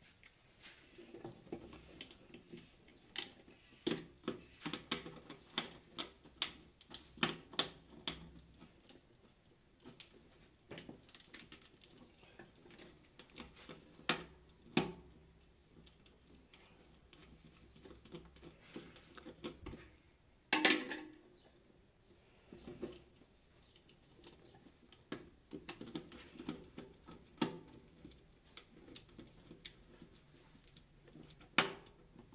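Wiring work inside an electrical control panel: insulated wire being handled, pressed into slotted plastic wiring duct and fitted to a relay terminal, giving irregular small clicks, taps and scratches. One louder rasp comes about two-thirds of the way through.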